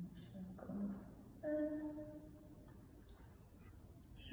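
A woman's short hums and murmurs. The longest is held at a steady pitch for about a second.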